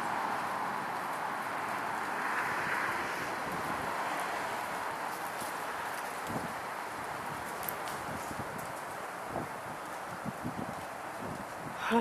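Steady outdoor background hiss that swells briefly about two seconds in and slowly fades, with a few soft low thumps in the second half.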